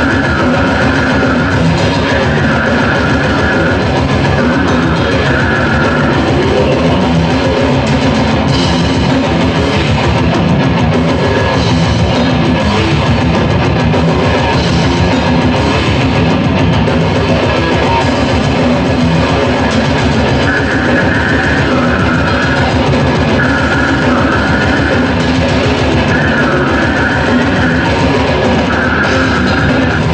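Old-school death metal band playing live: heavy distorted guitars over dense, fast drumming. A high repeated figure runs over the first few seconds, drops out, and comes back for the last eight or so.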